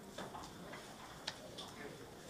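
A few faint, sharp clicks and taps in a quiet room, the loudest about a second and a quarter in.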